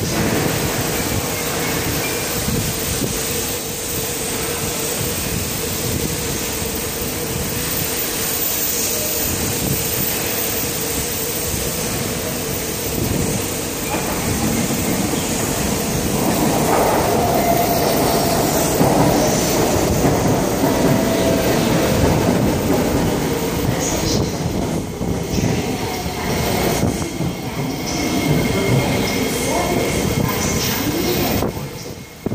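SMRT C151B metro train arriving at the platform. Its running noise grows louder from about halfway through, with wheel squeal and shifting tones as it runs in and slows.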